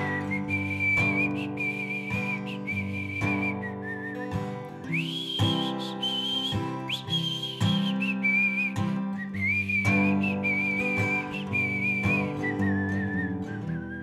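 A high whistled melody over strummed acoustic guitar. The whistle steps up to a higher phrase in the middle and comes back down near the end, while the guitar chords keep going underneath.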